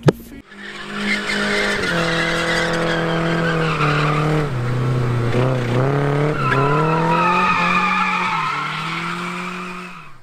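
Nissan 240SX (S14) drifting: the engine is held at high revs, dipping and then climbing again, while the tyres squeal through the slide. A sharp click comes at the very start.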